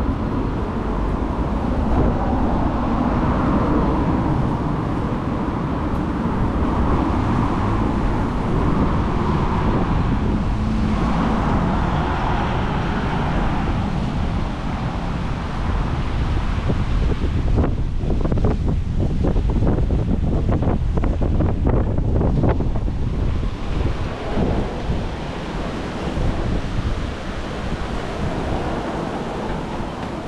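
Street ambience of road traffic passing on a city street, with wind buffeting the microphone: a steady low rumble that swells now and then as vehicles go by.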